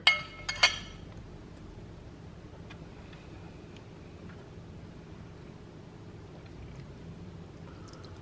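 A metal fork set down on a ceramic dinner plate: a sharp clink with a short ringing tone, then a second clink about half a second later, followed by quiet room tone.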